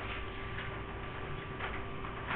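Steady room hum with a few faint ticks, roughly one a second.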